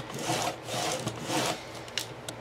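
Fiskars sliding paper trimmer with a dull blade drawn back and forth along a cardboard book cover, a few scraping strokes, with a click near the end. The thick board is not cut through in one pass.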